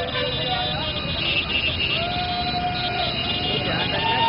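A slow procession of motorcycles running together on a road, with long wavering tones of a second or two each over the engine noise.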